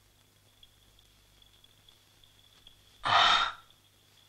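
A person's heavy sigh: one loud breath of about half a second, near the end, over a faint steady high tone.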